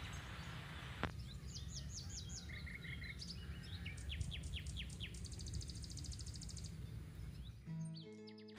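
Small birds calling over a low wind rumble on the microphone. There are short repeated chirps, a run of quick falling whistles around the middle, and a fast, even trill of high ticks after about five seconds.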